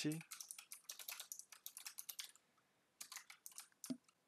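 Typing on a computer keyboard: a quick run of keystrokes lasting about two seconds, a short pause, then a second brief burst of keystrokes near the end.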